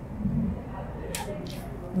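A pause in a woman's speech, holding only a faint low murmur just after the start and a short soft hiss about a second in.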